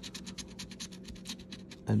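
A coin scraping the coating off a paper scratch-off lottery ticket in quick back-and-forth strokes, about ten a second, stopping just before the end.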